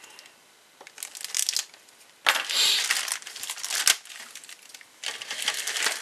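Clear plastic kit bag crinkling as a plastic parts sprue is slid out of it, in bursts: a short one about a second in, a longer, louder stretch from just after two seconds to about four, and another near the end.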